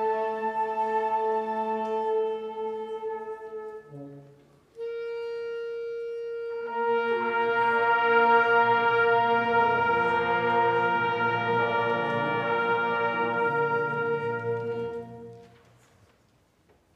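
High school concert band playing long held chords. A chord dies away about four seconds in, a single held note enters, and a couple of seconds later the full band joins in a loud sustained chord that is released near the end.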